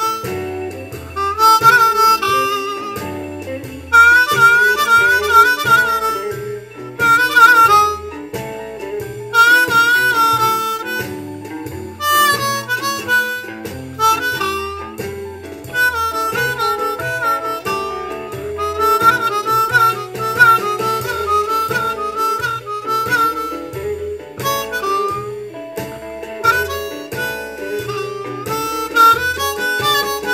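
A-key diatonic harmonica improvising blues phrases confined to holes three, four and five, with bent, wavering notes in short bursts. It plays over a medium-tempo shuffle backing track in E with guitar and bass.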